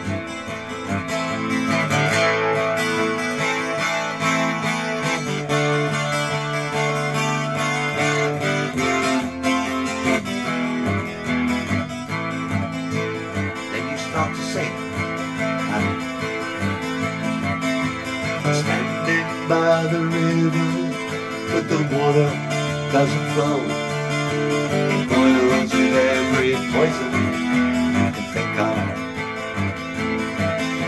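Takamine acoustic guitar played continuously: a bass-string riff picked in under a rhythmic chord strum, with the chords changing as it goes.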